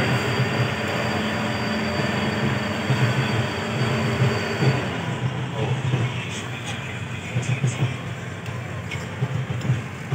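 Ship's deck crane running as it lowers its hook chains: a steady mechanical drone with a thin high whine that stops about five seconds in, followed by lighter scattered clicks and knocks.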